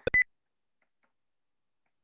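A short, sharp electronic beep with a click, right at the start, then near silence except for two faint ticks.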